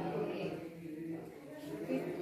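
Indistinct voices talking in a classroom.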